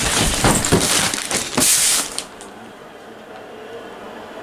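A person crashing into a stacked cardboard box, folded duvet, pillow and suitcase and knocking them over onto bedding on the floor: a jumble of thuds and rustling that dies down about two seconds in.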